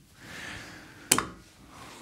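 A single sharp knock about a second in, as a small metal guitar compressor pedal is set down, after a faint rustle of handling.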